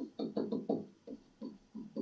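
Stylus tapping and knocking on a tablet screen while handwriting, about eight short, irregular knocks, each with a brief ring.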